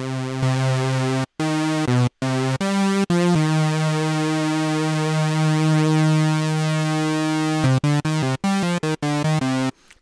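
Propellerhead Reason's Subtractor synthesizer playing a sawtooth patch with phase offset modulation, which gives a thick sound much like a trance supersaw. It plays a run of notes broken by short gaps, with one long held note in the middle and several quick notes near the end.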